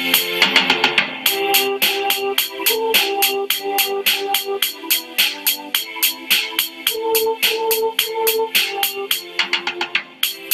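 Computer playback of a notated score from Noteflight: a simple melody line in held notes over sustained violin chords, electric piano playing repeated eighth-note chords, and a drum part with steady eighth-note hi-hat ticks. It is a synthesized rendering of a short four-bar melody fitted to a chord progression.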